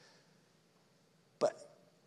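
A pause with near silence, then a man says one short word, "But", into a microphone about one and a half seconds in.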